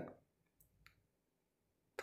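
Near silence, with one faint short click a little under a second in.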